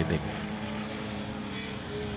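Austin Mini race car engines running under power, a steady drone that falls slightly in pitch.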